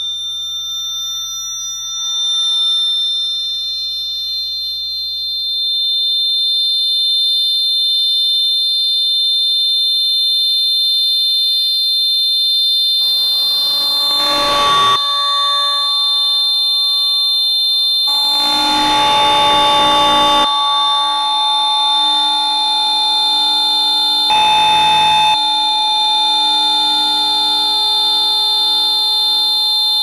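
Harsh noise/drone music: several steady, shrill high electronic tones held like an alarm. Walls of noise surge in three times, about 13, 18 and 24 seconds in, leaving lower steady tones sounding beneath.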